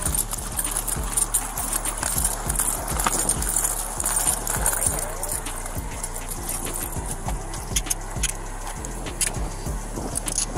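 Footsteps on concrete and clothing rubbing against a police body-worn camera as its wearer walks, with irregular soft thumps.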